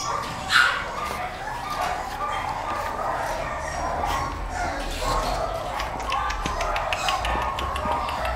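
English bulldog barking, with one sharp, loud bark about half a second in and further scattered barking after it.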